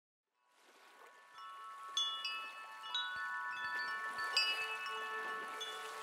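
Chimes ringing: many struck, bell-like notes overlapping and sustaining, fading in from silence and building.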